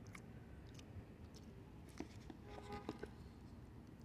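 Almost quiet, with faint scattered clicks and small knocks of a cookie being handled in a paperboard cookie box, and a faint brief pitched sound a little after the middle.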